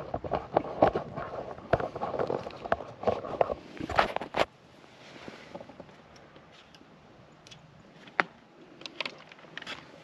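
Close handling noise as gear is adjusted at the microphone: a busy run of clicks, knocks and rustling for the first four and a half seconds, then quieter with a few isolated clicks, one sharp click near the end.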